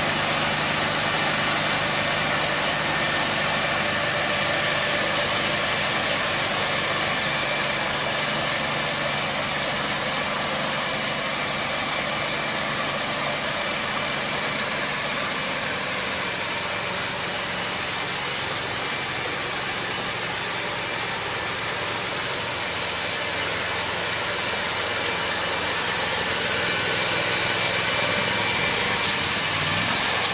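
Mudd Ox amphibious tracked ATV running at a steady, unchanging engine note while its Adair tracks churn through flood water and mud, with a few sharp knocks near the end.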